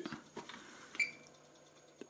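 Lid of an electric contact grill being lifted open: a faint click, then a short ringing metallic click about a second in, over a faint steady hum.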